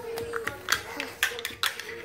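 A few light, sharp taps and knocks of a small plastic toy figure being moved and set down on a tile floor, over a steady faint background tone.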